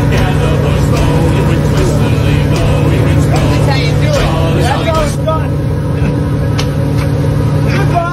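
Steady low drone of a fishing boat's engine, with brief voices and scattered knocks over it.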